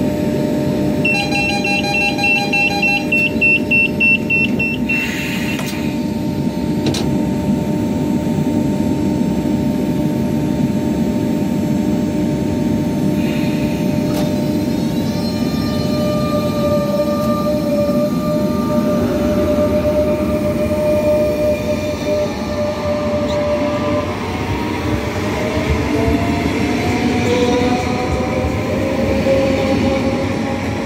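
Renfe Cercanías electric commuter train at the platform: a rapid electronic beeping of the door-closing warning for about two seconds, a short hiss a few seconds in, over a steady electrical hum. In the second half, whining tones rise steadily in pitch as the traction motors start to pull the train away.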